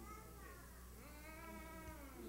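Faint, high, drawn-out vocal cries, like a small child whimpering: two long whines in a row, each rising and falling in pitch.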